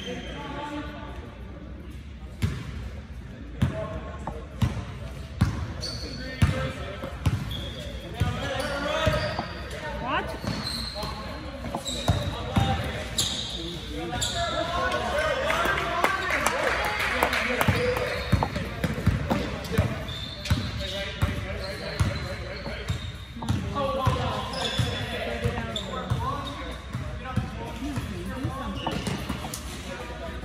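A basketball bouncing on a gym floor, dribbled over and over in a run of sharp thuds, with brief sneaker squeaks on the court.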